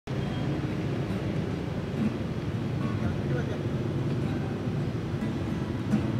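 Street ambience: a steady rumble of road traffic with people's voices talking in the background.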